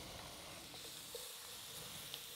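Diced onions sizzling faintly in a hot butter roux as they start releasing their water, stirred in with a wooden spoon.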